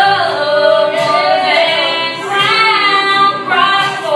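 Women singing a slow gospel song together over steady held accompaniment notes.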